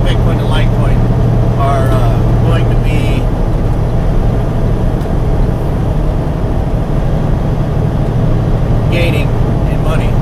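Steady low drone of a semi truck's diesel engine heard from inside the sleeper cab, with a few short bits of a man's voice near the start and near the end.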